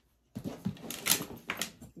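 Leather handbag straps and their metal clip hardware being handled, with rustling and several sharp clicks. A brief moment of dead silence at the start.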